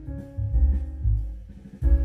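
Recorded music played back from a CD on a Pioneer stable-platter CD recorder through hi-fi speakers: a bit bass-heavy, with a strong bass line of repeated low notes under held tones.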